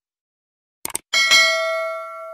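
Subscribe-animation sound effects: a quick double mouse click just before the one-second mark, then a notification bell ding. The ding is struck twice in quick succession and rings on, fading.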